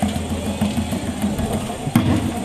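Low, steady drum rumble, with one sharp loud hit just before the end.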